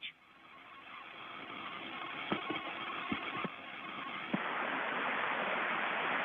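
Hiss of an open radio voice channel between crew callouts, growing steadily louder with a step up about four seconds in, and a few faint clicks.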